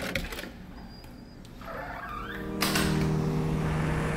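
Digital door lock and handle being worked: sharp clicks of the handle and latch, then a short high beep from the lock about a second in. About two and a half seconds in, a louder rushing noise sets in with a low steady drone under it.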